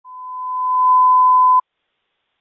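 Police radio dispatch alert tone: a single steady high tone that grows louder over the first second, holds, and cuts off sharply about a second and a half in. It marks the start of priority radio traffic.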